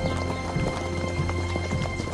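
Background music with long held notes over the irregular clip-clop of several horses walking.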